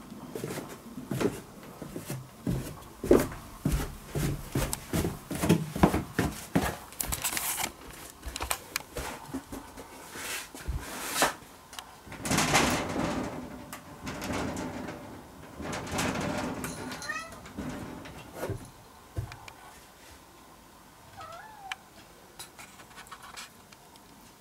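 A run of knocks and rustling thuds over the first half. Later, a cat meows twice in short curved calls, once about two-thirds of the way in and again near the end.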